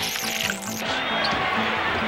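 A videotape dropout: a sudden burst of hiss and buzz lasting under a second. It gives way to background music with a repeating bass note over basketball game sound.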